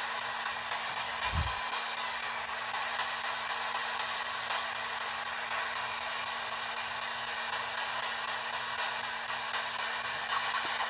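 P-SB7 spirit box sweeping radio channels in reverse, giving a steady hiss of static over a faint steady hum. A brief low sound falling in pitch cuts through about a second and a half in.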